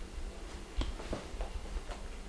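Soft crunches of crispy garlic flatbread being chewed, a few short crunches in the second half.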